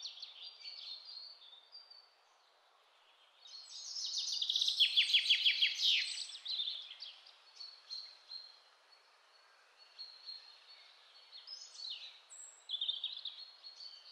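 Birds chirping and singing. The loudest part is a rapid series of high chirps from about three and a half to six and a half seconds in, with fainter short calls scattered before and after.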